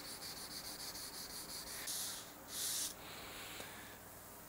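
Hand sanding block rubbed along the edge of a guitar neck's fretboard to ease its sharp edge. It makes quick, faint scratchy strokes, then two longer, louder hissing strokes about two seconds in.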